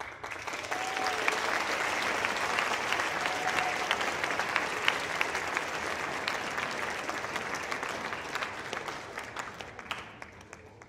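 Audience applauding, starting at once as the singing stops, with a couple of short calls in the first few seconds; the applause fades away near the end.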